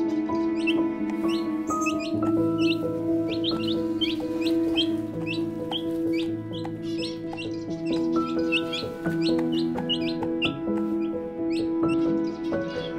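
Young chicks peeping, a rapid string of short high calls about three to four a second, over soft background music with long held notes.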